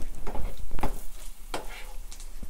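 A metal spoon stirring and scraping through mustard seeds and green chillies frying in oil in a small non-stick pan, in several short strokes over a light sizzle.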